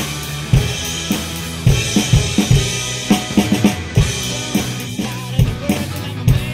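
Acoustic drum kit played in a steady rock groove: kick drum and snare hits with cymbals, over a recorded rock song with steady bass and guitar lines.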